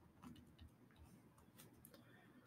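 Near silence with a few faint, irregular ticks from a stylus on a tablet screen as a word is handwritten.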